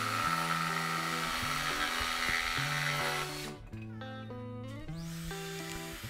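Ridgid cordless jigsaw cutting freely through a Douglas fir 2x4, under background music. The saw stops about three and a half seconds in, leaving only the music.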